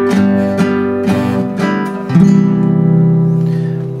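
Classical guitar strumming a G7 (Sol 7) chord in an even rhythm, about two strokes a second, then a final chord struck about two seconds in and left to ring out.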